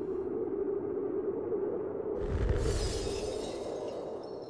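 Trailer sound design: a steady low drone, joined about two seconds in by a sudden deep boom with a bright, crashing hiss above it that slowly dies away.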